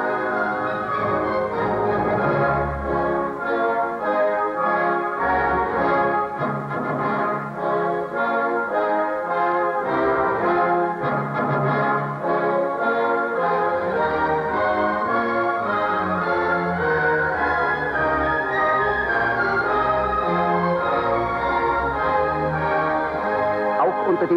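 Symphony orchestra playing classical music: held, slowly changing chords over a moving bass line, with no break throughout.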